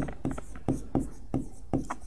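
Chalk writing on a blackboard: a handful of short, sharp taps and scratching strokes as a word is written.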